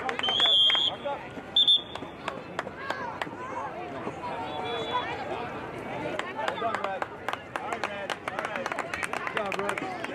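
A referee's whistle blows twice: a blast of about half a second, then a short one about a second later. Spectators chatter throughout.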